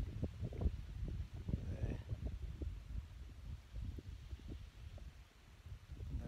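Wind buffeting a hand-held camera's microphone: an uneven low rumble with short thumps all through.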